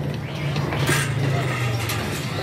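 Motor scooter engine running close by, a steady low hum, over busy street noise with a brief rustle about a second in.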